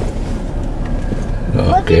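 Car cabin noise: a steady low engine and road rumble heard from inside the car. A voice says "okay" near the end.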